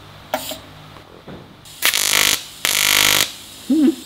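TIG welding arc in AC mode buzzing in two short bursts of about half a second each, about two and three seconds in, after a brief sound shortly after the start. The machine was left on AC while welding stainless steel, so the tungsten tip balled up.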